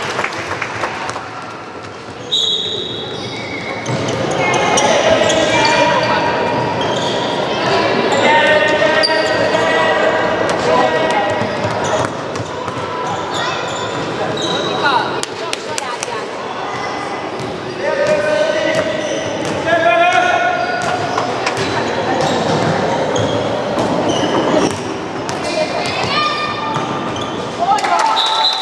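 A handball bouncing repeatedly on a wooden sports-hall floor, amid shouting and calling from players and spectators, all echoing in a large hall.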